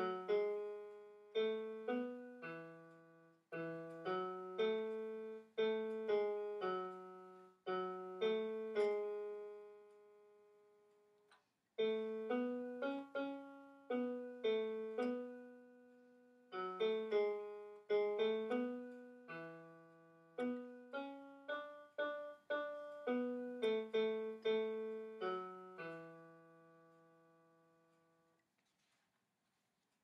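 Electronic keyboard with a piano voice playing a choir's bass part one note at a time, each note struck and then fading. There is a long held note about ten seconds in, and the last note dies away a little before the end.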